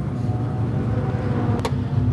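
A car engine idling steadily, with a single sharp click about a second and a half in.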